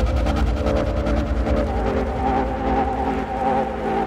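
Euphoric hardstyle track in a calm passage: held, slightly wavering synthesizer chords over a low bass line, with no kick drum.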